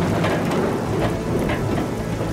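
Rain pouring steadily as a thunderclap rolls away.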